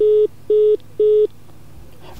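Three short, even beeps of one pitch, about half a second apart, heard over a GSM call through a Nokia 6150 mobile phone just after the speaking-clock announcement ends: network call tones at the end of the recorded message.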